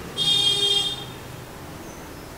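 Whiteboard marker squeaking on the board as a word is written: one high-pitched squeak lasting just under a second near the start.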